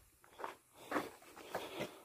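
Faint footsteps on a grassy dirt track, three soft steps at a walking pace.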